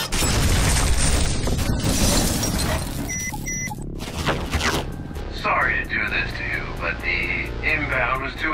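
A heavy crash of an axe striking a large metal door, loudest in the first two seconds. A little after three seconds, two short electronic beeps come from a wrist communicator, and from about halfway through, a distorted, fluttering transmission voice from its hologram begins.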